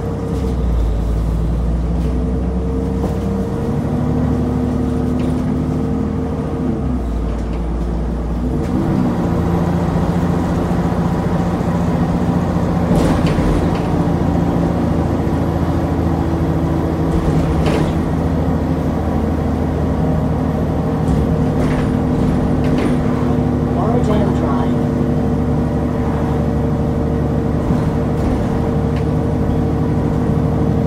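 Interior sound of an Alexander Dennis Enviro400 double-decker bus: the diesel engine idles low at a stop, then rises as the bus pulls away about nine seconds in and keeps pulling under load. Interior rattles and knocks sound now and then while it moves.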